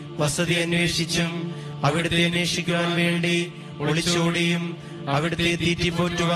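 A voice chanting a Malayalam litany to St Joseph in short repeated invocations, about one every two seconds, over a steady sustained drone.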